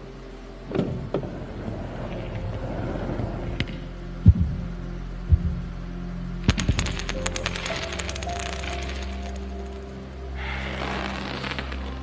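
Soundtrack of an animated demo over the hall's speakers: sustained music with a low steady tone, punctuated by knocks and clicks of balls colliding. Two sharp knocks stand out about four and five seconds in, a quick run of clicks follows a little later, and a rush of noise swells near the end.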